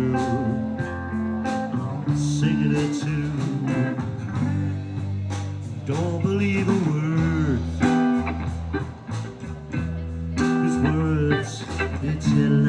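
Live rock band of electric guitar, bass guitar and drums playing an instrumental passage of the song, with the guitar's notes bending up and down about halfway through.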